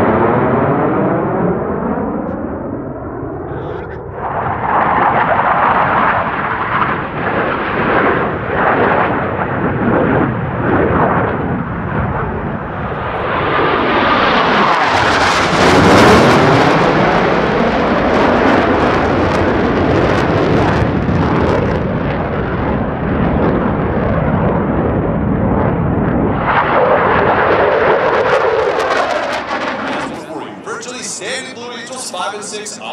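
Blue Angels F/A-18 Super Hornet jets flying low overhead in formation. Their engine noise swells and fades with sweeping rises and falls in pitch as the jets pass, loudest about halfway through.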